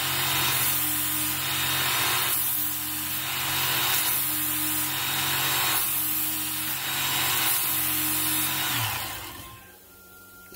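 Work Sharp Ken Onion Edition electric belt sharpener running with a steady motor hum and a thin high whine. A fillet knife's edge is drawn across the moving abrasive belt in repeated passes, each a grinding hiss. About nine seconds in the motor is switched off and winds down.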